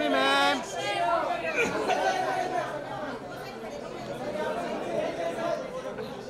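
Several voices chattering and overlapping, with one voice calling out loudly at the very start.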